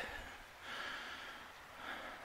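A faint breath from the person holding the camera, a soft airy sound with no voice in it, between his sentences.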